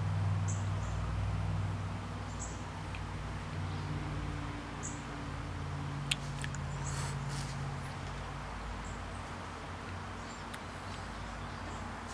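Quiet backyard ambience: a steady low hum with faint, short high chirps now and then, and a few soft clicks about six to seven seconds in.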